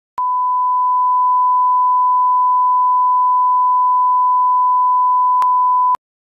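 Television test-card tone: a single steady, high-pitched sine-wave beep that holds one pitch, with a small click near the end, then cuts off suddenly.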